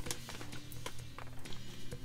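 Quiet background music with steady low held notes, with light clicks and crinkles from clear plastic parts bags being handled.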